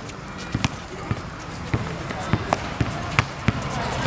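Basketball being dribbled on an outdoor hard court: several sharp, irregularly spaced thumps of the ball hitting the ground.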